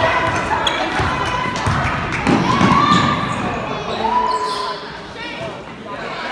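A basketball bouncing on a gym's wooden floor during a game, mixed with shouting voices from players and spectators, in the echo of a large gym.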